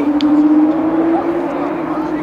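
A steady motor hum, rising slightly in pitch in the middle and then settling, with faint shouting from the pitch behind it.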